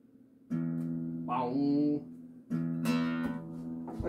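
Acoustic guitar strings struck and left ringing, twice: about half a second in and again a little past halfway, to check the tuning. The guitar sounds only slightly out of tune.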